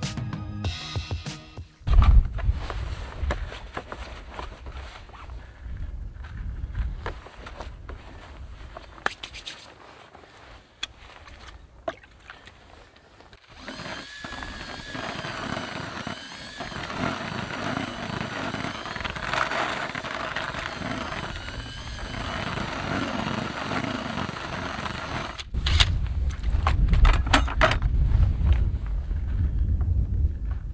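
A cordless drill with a paddle mixer runs steadily in a plastic bucket for about ten seconds in the middle, stirring groundbait. Background music plays. There are scattered knocks and handling before the drill, and a low rumble near the end.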